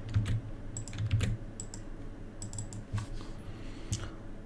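Computer keyboard keystrokes while editing code: a scattered run of short, irregular clicks.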